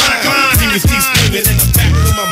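Hip hop song: rapped vocals over a beat with heavy bass notes.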